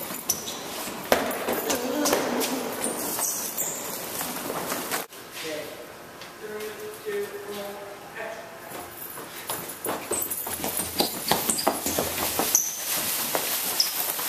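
Indistinct voices over scuffling and handling noise, with sharp clicks and knocks scattered through, thickest near the end.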